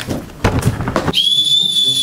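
A handheld plastic whistle blown in one long, steady, high-pitched blast starting about halfway in, preceded by a few brief knocks and rustles.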